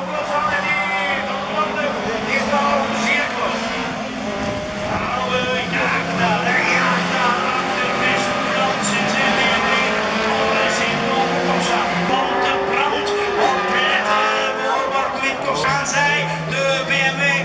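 Rallycross race cars racing past at full throttle, several engines running hard at once, their pitch rising and falling as the cars accelerate and ease off.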